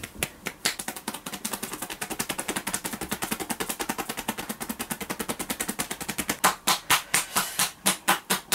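Hands tapping on a person's head and upper back in percussion massage (tapotement): a fast, even patter of light taps, about nine a second, giving way about six seconds in to slower, louder strikes, about four a second.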